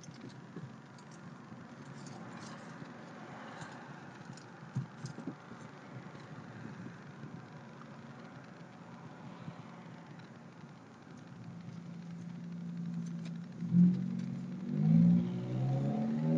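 Inside a slow-moving truck cab: low, steady engine and road noise with scattered light clicks and rattles. Louder pitched sound comes in over the last couple of seconds.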